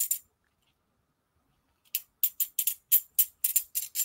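Computer keyboard typing: a quick, uneven run of sharp key clicks from about two seconds in, after a couple of clicks at the very start.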